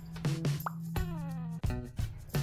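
Light background music of short plucked notes over a held low tone, with a quick rising pop a little past a third of the way in, followed by a tone sliding downward.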